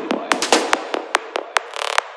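Psychedelic trance with the bass dropped out, leaving sharp electronic clicks and hi-hat-like ticks at about five a second, with short hissing noise swells between them.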